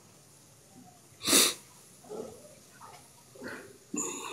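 A man's single short, sharp burst of breath noise about a second in, hissy and sudden, followed by a few faint short mouth sounds.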